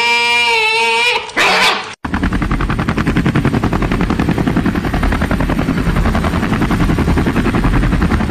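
Two long, wavering cat-like yowls, the second ending about a second in. After a sudden cut comes a steady, fast, evenly pulsing motor or rotor sound, heavy in the low end.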